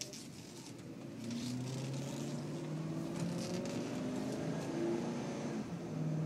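2006 Lincoln Mark LT's 5.4-litre V8 engine heard from inside the cab as the truck pulls away and accelerates. The engine note grows louder about a second in and steps up in pitch, then holds steady under tyre and road noise.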